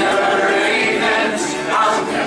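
Many voices singing a drinking song together, with a string instrument played along.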